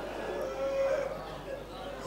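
A man's long, held lamenting note through the public-address system, fading out in the first second, followed by faint hall noise and hum.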